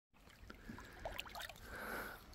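Faint trickling and lapping of shallow water over stones, with a few small drips and plops.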